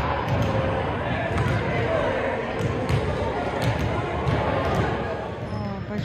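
Basketballs bouncing on a gym floor in repeated thuds, with people talking in the hall.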